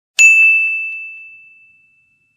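A single notification-bell ding sound effect for a click on a subscribe animation's bell icon. It strikes about a quarter second in and rings on one clear high tone that fades away over about a second and a half.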